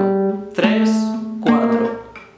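Classical nylon-string guitar playing single plucked notes of a one-finger-per-fret chromatic finger exercise: two new notes about a second apart, each a step higher, ringing on between plucks.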